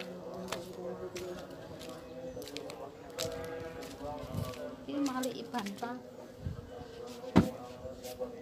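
Faint voices in the background, with a few light knocks and one sharp knock near the end.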